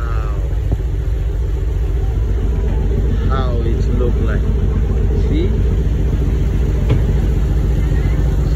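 Motor yacht's engine running steadily in a low drone while underway, with water and wind noise. A few brief voices come through in the background.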